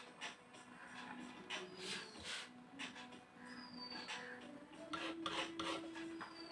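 Palette knife scraping and spreading thick paint across the painting's surface in several short rasping strokes, the loudest near the end.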